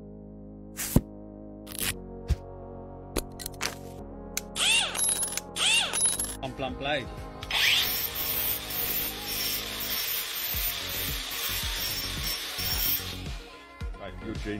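Angle grinder running with its abrasive disc against the steel teeth of an oscillating multi-tool blade: a steady, hissing grind that starts about halfway through and stops shortly before the end. Background music and a few sharp clicks come before it.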